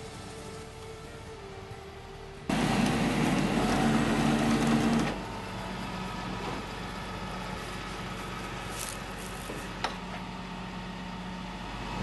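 Flatbed tow truck's engine and winch running: a loud mechanical whir with steady tones cuts in suddenly about two and a half seconds in. It drops after about five seconds to a steady, lower hum.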